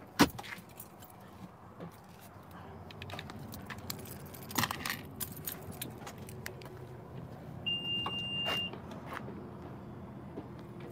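A car door latch clicks open, then keys jangle and rattle as he handles them and walks round the car. Near the end a single steady electronic beep sounds for about a second.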